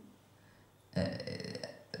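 Near silence for about a second, then a woman's drawn-out hesitation 'euh' into a handheld microphone, lasting about a second.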